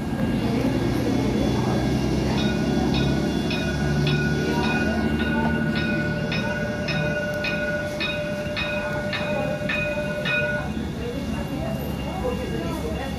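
A warning bell rings rapidly, about three strikes a second, for some eight seconds, starting a couple of seconds in. Under it runs the low rumble of a light rail tram approaching through a level crossing.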